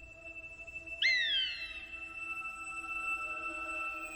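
Orchestral film score holding sustained high tones, with a sharp, high falling screech about a second in and a fainter one near the end.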